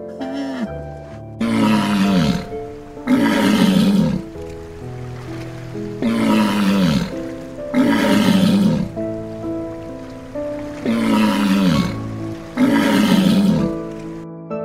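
A large animal's hoarse roaring call, six times in three pairs, each call about a second long and falling in pitch. Gentle instrumental music plays throughout.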